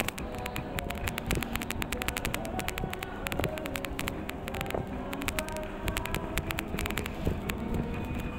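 Supermarket ambience: a steady low rumble with rapid, dense clicking and rattling throughout, under faint background music.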